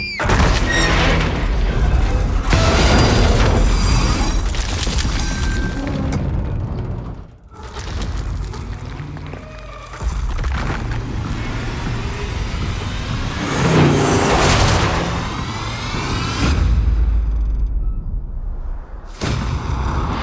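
Action-film trailer mix: dramatic music layered with heavy booms and crashing, shattering impact effects. The level dips briefly about seven seconds in, and a deep low rumble comes near the end.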